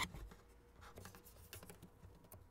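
Faint handling noise: small scratches and clicks as a clip-on wireless guitar microphone is fitted and shifted at an acoustic guitar's soundhole.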